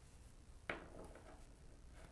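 Near silence: quiet room tone with one soft tap a little under a second in.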